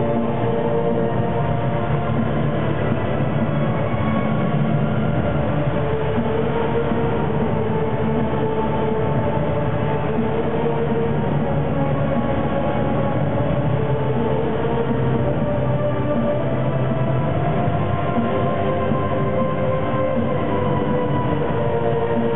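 Loud, steady droning soundscape played over a club PA system: rumbling noise under sustained tones that drift slowly in pitch, with no beat. Recorded with a cut-off top end.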